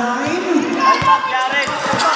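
Basketball being dribbled on the court, a couple of sharp bounces, with players and spectators shouting around it.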